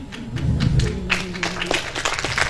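Audience clapping, with dense overlapping claps building from about a second in, over a low steady hum.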